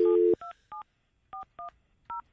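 Telephone dial tone that cuts off about a third of a second in, followed by about five short touch-tone (DTMF) beeps in uneven groups as a number is dialed.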